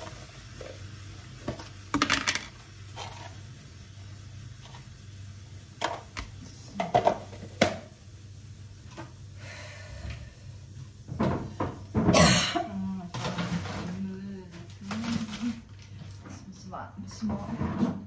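Kitchen cabinet doors and things being handled: scattered knocks and clatter over a steady low hum.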